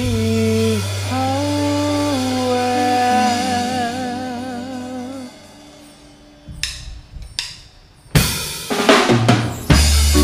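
Live reggae band: a held melody line with slow vibrato over a sustained bass note fades out about five seconds in. Then the drum kit comes in with a few separate hits and a fill that brings the full band back in near the end.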